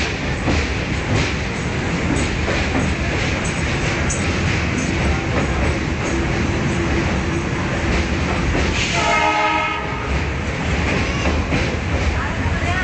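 Passenger train crossing the Pamban rail bridge, heard from inside a coach: a steady rumble of wheels on rails with repeated sharp clicks from the rail joints. A brief horn sounds about nine seconds in.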